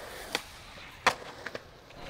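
Skateboard rolling on concrete, with two sharp clacks about a third of a second and a second in and a few faint ticks after.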